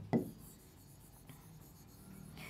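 Faint scratching and tapping of a stylus writing on the screen of an interactive digital board.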